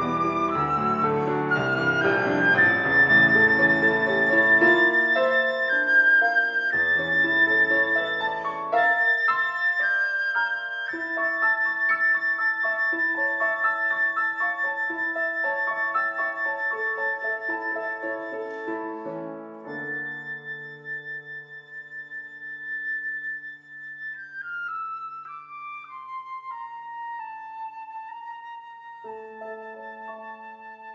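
Concert flute and grand piano playing a classical duet in long held notes, gradually growing quieter. Near the end the flute steps down through a run of notes and settles on a soft held note over piano chords as the piece draws to its close.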